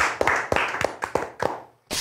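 Two people applauding with hand claps, the claps thinning out and then cutting off suddenly to silence near the end.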